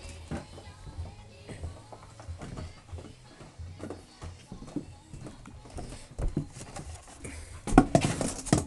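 English Springer Spaniel puppies scuffling over a plastic pop bottle: scattered clicks and knocks of paws and plastic on the floor, with music faintly underneath and a louder knock near the end.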